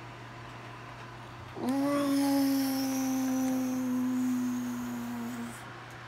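A person humming one long, steady note that starts about two seconds in, is held for nearly four seconds and sinks slightly in pitch toward the end.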